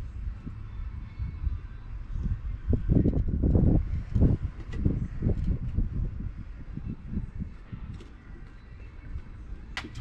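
Wind buffeting the microphone in uneven gusts, loudest a few seconds in, with a few faint clicks from hand work on the dirt bike.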